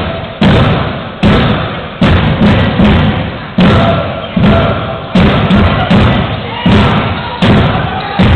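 Loud, regular thumps, about one every 0.8 seconds, each dying away with a reverberant tail in a large sports hall.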